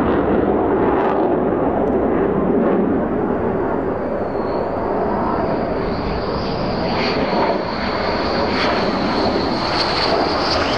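F-15E Strike Eagle on approach with its landing gear down: a steady loud rush of jet noise from its twin turbofan engines, with a high turbine whine that comes in about four seconds in and grows stronger as the jet nears.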